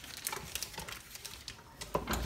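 Faint knocks and rustles of hands handling a KitchenAid stand mixer, with one sharp click near the end; the mixer's motor is not yet running.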